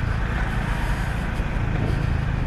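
Honda Pop 110i's small single-cylinder four-stroke engine running at low speed while the motorcycle filters between lanes of slow traffic, with a steady rumble of road and traffic noise.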